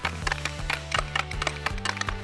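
Quick, even clicking of a hockey stick blade tapping a green puck back and forth on a concrete floor, about five taps a second, over background music with steady low bass notes.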